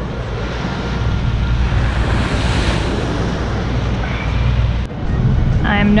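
Wind buffeting the microphone over surf washing onto a beach, the surf swelling louder about halfway through. It cuts off suddenly near the end.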